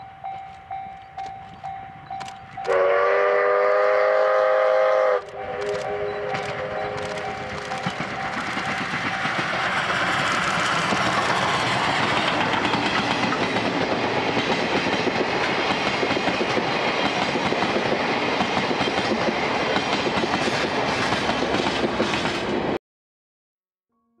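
JNR C61-class steam locomotive C61 20 working a passenger train: its exhaust beats at about two to three a second, then its whistle sounds for about two and a half seconds as one loud multi-note chord. It then passes, and the rumble and clatter of its coaches rolling by builds and holds to the end.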